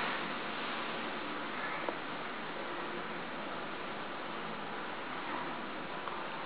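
Steady hiss of room tone, with one faint click about two seconds in.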